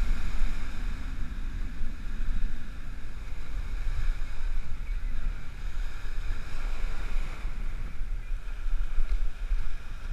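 Wind buffeting the microphone with a low, uneven rumble, over small surf breaking and washing up a sandy beach.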